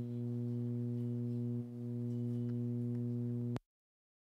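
A steady low tone with a stack of overtones, held without change apart from a brief dip, that cuts off abruptly about three and a half seconds in.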